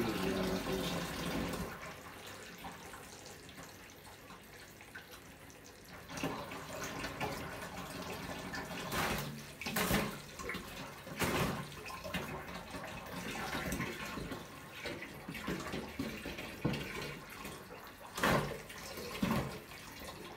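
Water running and splashing as an aquarium gravel siphon drains tank water through a clear hose, louder for the first couple of seconds. A few short, louder noises break in around halfway and near the end.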